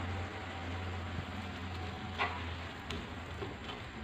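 Chicken and onion filling sizzling steadily in a frying pan, with a low hum that stops about two-thirds of the way through and a light tap just past halfway.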